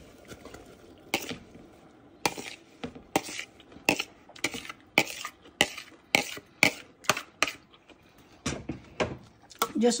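A spoon knocking and scraping grated radish off a plastic bowl into a pot of hot pickling liquid. It makes a run of sharp, irregular clacks, about two or three a second.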